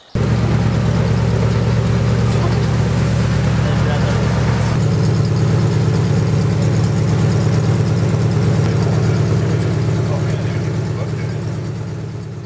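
Engine of a 1979 Buick LeSabre race car idling loudly and steadily, a dense low rumble with no revving. It fades out over the last couple of seconds.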